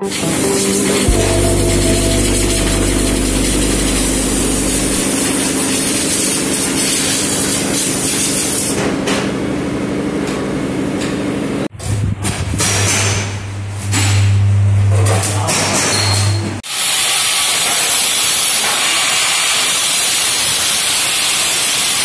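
Steady loud hiss of a compressed-air paint spray gun with a low machine hum beneath it. About twelve seconds in it cuts to other loud workshop machinery with a strong low hum, and at about seventeen seconds to a steady hiss again.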